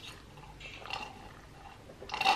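Faint sipping of a drink through a metal straw from a ceramic mug, a few short sips between about half a second and a second in and once more near the end.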